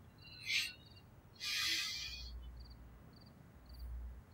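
An owl gives two harsh, shrieking calls, a short one about half a second in and a longer, louder one around a second and a half in. Behind them crickets chirp in a faint, steady rhythm, about one and a half chirps a second. A low rumble sits underneath in the second half.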